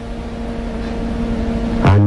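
Steady low hum with a constant tone and a low rumble underneath, in a pause between a man's words.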